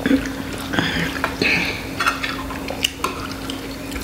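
Spoons and forks clinking and scraping against ceramic bowls as people eat, with several sharp clinks scattered through.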